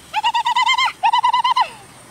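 A bird calling: two quick runs of rapid, evenly repeated notes, each lasting under a second, with a short break between them.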